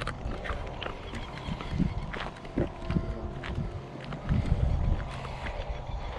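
Footsteps of people walking: irregular soft thuds and scuffs, with clicks and knocks from a hand-held camera being carried.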